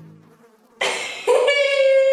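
Cartoon sound effect of a fly buzzing around a dead rabbit: a steady, even-pitched drone that starts just over a second in, after a short rush of noise.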